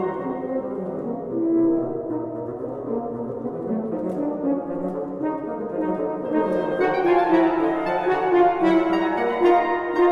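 Wind quartet of flute, clarinet, French horn and bassoon playing a lively contemporary chamber piece (Vivace). The texture grows fuller and a little louder about seven seconds in.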